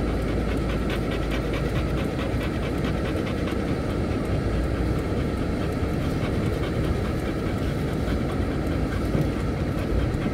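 Car rolling slowly over brick-paved streets, heard from inside the cabin: a steady low rumble of tyres and engine with a faint, fast clatter over it.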